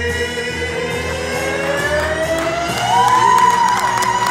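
A man and a woman singing a duet into microphones over musical accompaniment: one long sung line slides slowly upward in pitch and swells into a loud, high held note with vibrato about three seconds in, the climactic final note of the song.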